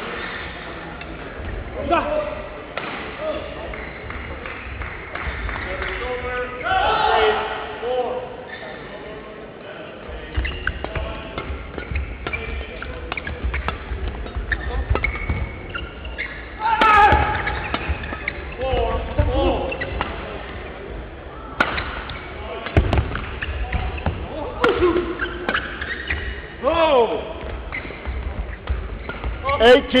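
Badminton play in a sports hall: sharp racket strikes on the shuttlecock and shoe squeaks on the court floor, with players' shouts and the hall's echo of play on neighbouring courts.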